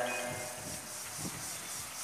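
A pause in speech amplified through a public-address system: the last words trail off in the first half second, leaving a faint, even hiss and open-air background.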